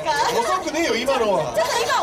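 Speech only: several voices talking over stage microphones.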